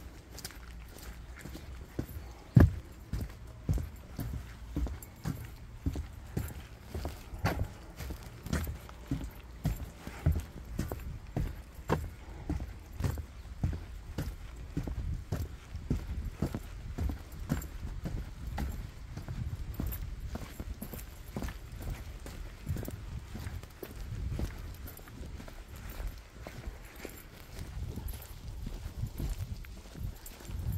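Footsteps of a person walking at a steady pace along a packed dirt trail, a regular series of soft low thuds.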